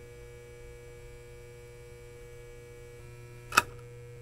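Faint steady electrical hum with a couple of steady higher tones over it, and one short sharp click about three and a half seconds in.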